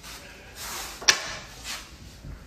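Faint rustling and shuffling, with a single sharp click a little over a second in.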